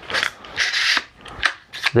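The action of a 5.56 AR-style carbine being worked by hand: a short rasp, then a rasping metallic slide of about half a second, then a few sharp clicks near the end.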